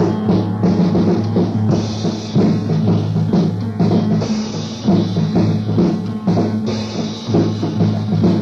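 Lo-fi punk rock band's instrumental opening: a drum kit keeps a steady beat over a loud, held low chord, with no vocals yet.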